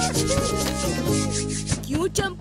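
Cartoon sound effect of rapid scratching and rubbing, as if at itchy skin, over background music.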